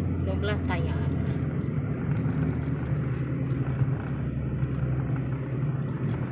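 Inside a moving car: a steady low hum of the engine and tyres on the road.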